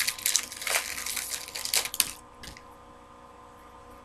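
Foil wrappers of Donruss Optic Football card packs crinkling and rustling as packs are handled and torn open, for about two seconds, then it goes much quieter.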